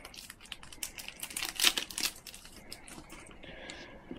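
Foil trading-card pack being opened by hand: the wrapper crinkling and tearing in a run of short crackles, loudest a little before halfway through.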